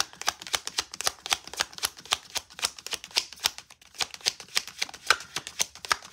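A deck of tarot cards being shuffled by hand: a quick run of crisp card clicks and flicks, several a second, with a short lull a little past halfway.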